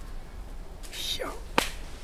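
A single sharp crack about one and a half seconds in, short and without ringing.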